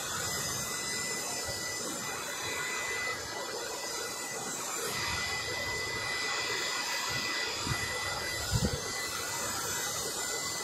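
Hair dryer blowing steadily: a constant rush of air with a thin, high motor whine, and a couple of low thumps near the end.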